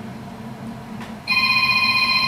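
Quiet room noise, then a little over a second in a steady electronic tone with several overtones begins and holds.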